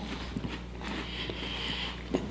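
Faint chewing of mouthfuls of dry saltine crackers, with a few small crunches and clicks.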